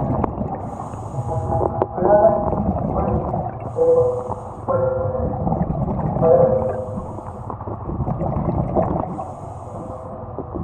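Scuba diver's regulator breathing underwater: a short hiss of inhalation about every three seconds, with bubbling, gurgling exhalations between.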